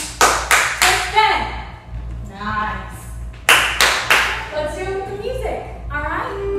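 A few people clapping their hands: a quick run of about four claps at the start, then three more about three and a half seconds in, with women's voices between.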